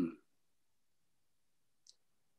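The tail of a man's 'mm' through a Zoom call, cut off sharply into dead silence, with one faint short click near the end.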